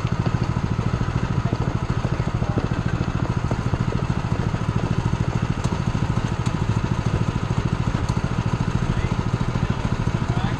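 A small engine running steadily at a low, even speed, its rapid firing pulses unbroken throughout.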